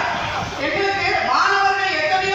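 Only speech: a man's voice talking steadily over a public-address microphone.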